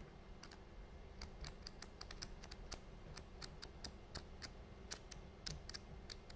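Paper pages of a small flip book flicking off the thumb one by one: a faint run of quick ticks, a few at first, then about five a second.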